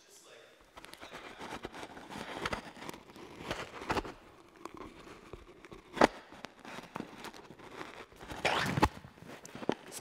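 Rustling and scraping handling noise from a head-worn microphone being repositioned at the wearer's ear and cheek. There are a few sharp knocks, the loudest about six seconds in.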